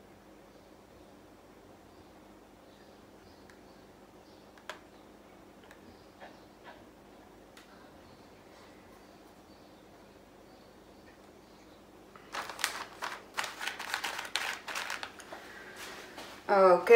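Quiet room tone with a few faint handling clicks. About twelve seconds in comes a loud, crisp crinkling and rustling of hands handling material, lasting about three seconds.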